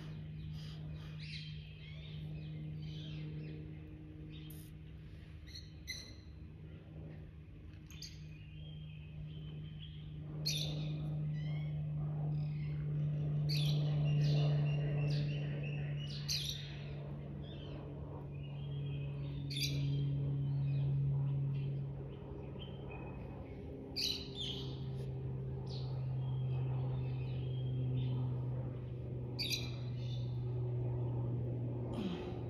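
Songbirds chirping and trilling in short, repeated calls throughout, over a steady low hum that swells and eases.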